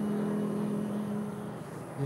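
A steady low hum with a constant pitch, fading slightly near the end.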